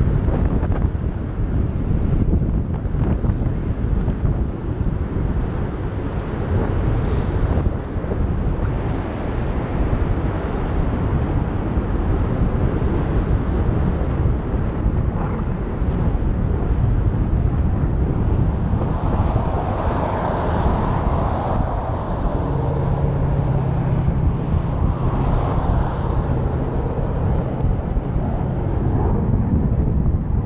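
Wind rushing over the microphone of a camera on a moving bicycle, a steady low rumble throughout. Past the middle a louder engine noise swells up, with a steady low hum that holds for several seconds and fades near the end.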